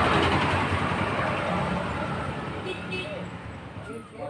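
A road vehicle passing by, its noise fading away over a few seconds.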